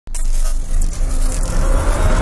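Cinematic intro sound effect: a loud, deep rumble with a rushing noise over it, kicking in abruptly at the start and building toward a boom.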